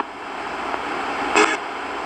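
RadioShack 20-125 portable radio hacked into a ghost box, sweeping continuously through the stations: a steady hiss of static between stations, with a brief snatch of broadcast sound about one and a half seconds in.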